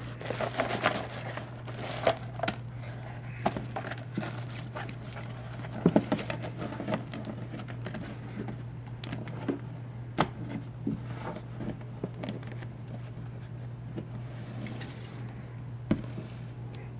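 Padded paper mailer crinkling and rustling as it is handled and emptied, with scattered sharp clicks and knocks of plastic-sleeved trading cards being set down on a table. A steady low hum runs underneath.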